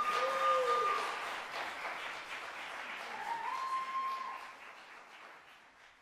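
Concert audience applauding at the end of a solo clarinet piece, with two long high calls from the crowd over the clapping, one at the start and one about three seconds in. The applause dies away near the end.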